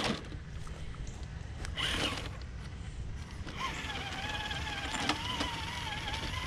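Traxxas TRX-4 RC crawler on Traxx tracks working over rock, the tracks slipping. Its electric motor and gearing whine under load, coming in a little past halfway, with a few sharp clicks from the tracks.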